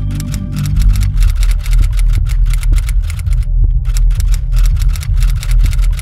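Typewriter keys clacking out a line of text, several strikes a second with a short pause midway, over music with a deep, continuous bass.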